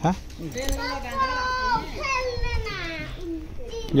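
A high-pitched voice giving long, drawn-out calls whose pitch glides up and down, starting about half a second in and stopping shortly before the end.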